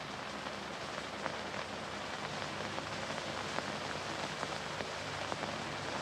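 Steady hiss and crackle of an old optical film soundtrack, with a faint low hum and a few scattered clicks.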